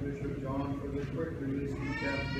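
Orthodox liturgical chant: voices singing sustained notes that step from one pitch to another.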